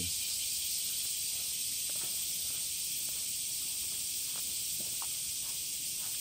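Steady high-pitched droning hiss of insects in the trees, unchanging throughout, with a few faint scattered ticks.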